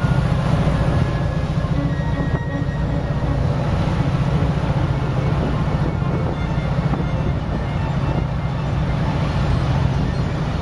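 A boat's engine running steadily with a low rumble, together with the rush of wind and water as the boat moves across the harbour.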